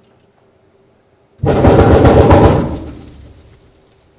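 The 64-foot diaphone pipe of the Midmer-Losh pipe organ sounding at its open top end, where a plastic bag over the opening flaps in the air blast. It comes in suddenly about a second and a half in as a loud, rapid pulsing flutter, stays loud for about a second and a half, then dies away as the note is shut off.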